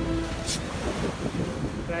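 Wind rumbling on the microphone over the wash of surf. A few steady music tones fade out in the first moment and a short hiss comes about half a second in.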